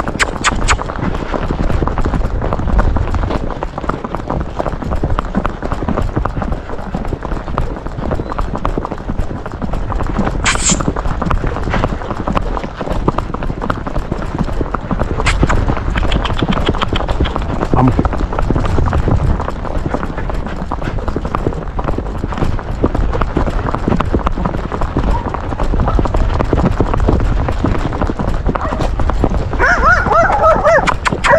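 A horse's hooves clip-clopping on asphalt in a quick, even rhythm as it is ridden along a paved road, heard from the saddle.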